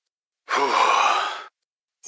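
A voice sound effect of a person's sigh of relief, an exhaled "uff": one breathy sigh about half a second in, lasting about a second, starting with a short falling voiced note and fading out.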